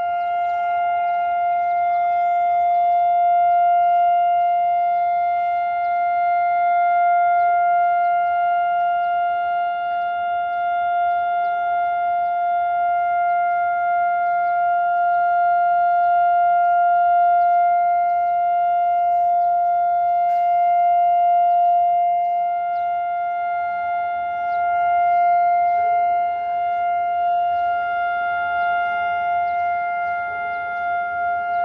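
Israeli public warning siren sounding one loud, long steady tone that neither rises nor falls. It is the two-minute nationwide memorial siren, not the rising-and-falling attack alert.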